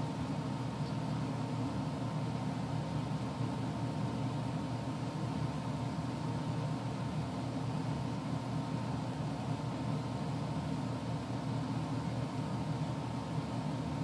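Steady low background hum and hiss, even throughout, with no distinct events.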